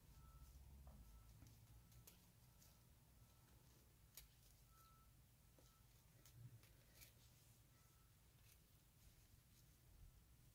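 Near silence: faint small ticks and rustles of a metal crochet hook working yarn through stitches.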